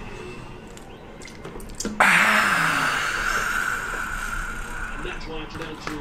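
A man exhales a long, loud, breathy "haaah" through his open mouth, starting suddenly about two seconds in and fading over about three seconds, the way one blows out after a drink to cool a mouth burning from spicy food.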